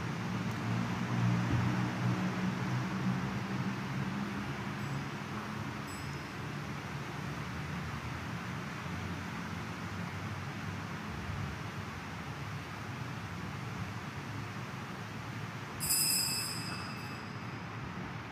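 Church room ambience during a lull in the Mass: a steady low hum and hiss. About sixteen seconds in there is a brief, bright high-pitched ring that fades within about a second.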